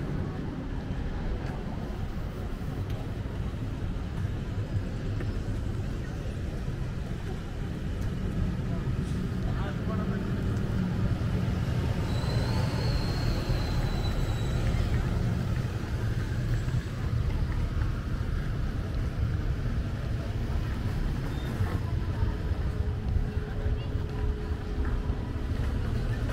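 Road traffic: a steady low rumble of passing vehicles and idling buses, with a brief high whine about halfway through as a wheeled excavator drives past.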